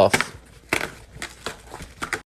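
Corrugated cardboard side flaps of a pizza box being torn off by hand: several short ripping sounds, about a second in and again near the end.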